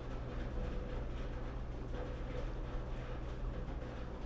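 Room tone: a steady low hum with faint background noise and no distinct event.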